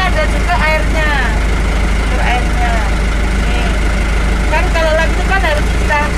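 A steady, loud, low mechanical drone, like an idling engine or running machinery, with scattered voices talking over it.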